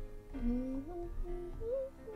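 A person humming a gliding tune over quiet background music.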